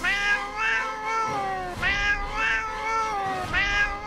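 Domestic cat meowing in three long, wavering calls in a row that sound like "I love you".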